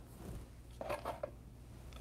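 Quiet room tone with a faint low hum, and a few soft rustles of plastic card holders being handled about a second in.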